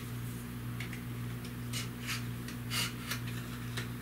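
Faint scrapes and light ticks of a B6-4 model rocket motor being pushed into the motor mount at the tail of an Estes Big Bertha, over a steady low hum.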